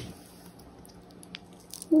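Fresh green pea pod being split open by hand: a few faint snaps and squishes, with soft clicks about a second in and again near the end.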